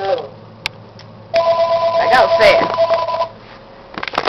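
A phone ringing for an incoming call: two steady notes sounding together for about two seconds, starting about a second and a half in, with a voice over them in the middle. A single click comes before the ring.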